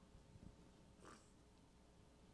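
Near silence: room tone in a pause in speech, with one faint brief sound about a second in.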